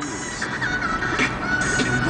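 Music playing on the car radio, heard inside the car's cabin.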